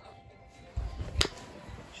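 Faint music under a brief low rumble of the phone being handled, ending in a single sharp click about a second in.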